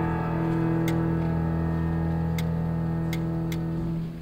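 A grand piano chord held on the sustain pedal, ringing steadily and slowly fading until it is damped right at the end. A few faint sharp clicks sound over it.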